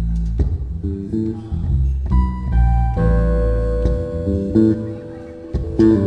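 Live acoustic jazz instrumental passage: a bass line moving under keyboard chords, with held higher keyboard notes coming in about halfway through and no singing.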